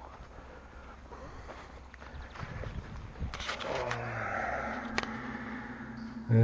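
Cheap submersible pump running in a concrete septic tank as it pumps out water: a low rumble of handling noise at first, then from about halfway a steady hum with a watery hiss, heard down the tank's opening. There are a few sharp clicks.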